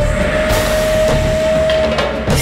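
Dramatic TV-serial background score: a single held note over a rising wash of noise that comes in about half a second in.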